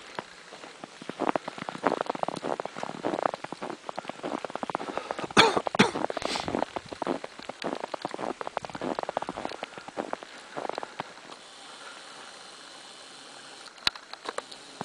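Footsteps crunching in deep fresh snow close to the microphone, a dense, irregular crackle with a few louder crunches around the middle. The crunching dies away for the last few seconds.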